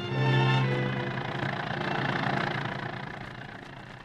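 A bowed-string music bridge ends about half a second in. It gives way to a radio sound effect of an old car, a flivver, running: an even engine rumble that swells and then fades down.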